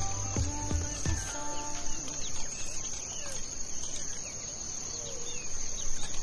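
Background music fades out about two seconds in, leaving grassland field sound: a steady high insect trill with scattered short bird chirps.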